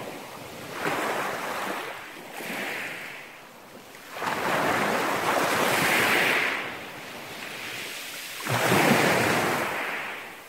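Small sea waves breaking and washing up a pebble beach, in several surges. The longest and loudest runs from about four to six and a half seconds in, and another sharp surge comes near nine seconds.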